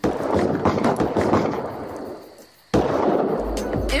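Rapid crackling of firecrackers in two bursts. The first fades away over about two and a half seconds, then a second burst starts suddenly near the end.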